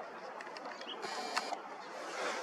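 Faint steady background hiss with one sharp click about one and a half seconds in and a few weaker ticks, the sound of a zoomed-in camera being handled and adjusted.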